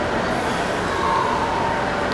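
Steady background noise of a large indoor exhibit hall, an even hiss and hum with a faint brief tone about a second in.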